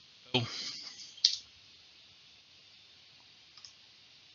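One sharp click at a computer about a second in, right after a spoken "and", then a faint second click near the end over quiet room tone.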